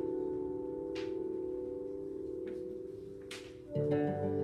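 Film soundtrack music playing in the room: a soft held chord that slowly fades, with two faint whooshes, then new music with deeper notes coming in near the end.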